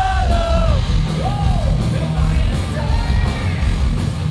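Thrash metal band playing live, heard from within the crowd: distorted electric guitars, drums and a yelled lead vocal whose pitch swoops up and down.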